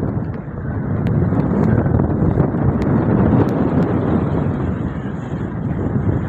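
Wind buffeting the microphone over a rough open sea: a steady, dense rushing noise.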